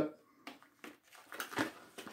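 Soft handling noise from a Forstner bit's plastic blister pack: a few light clicks and crinkles spread across the pause.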